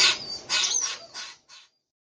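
Young green heron giving a run of harsh squawks, about four in quick succession, each fainter than the last, ending abruptly.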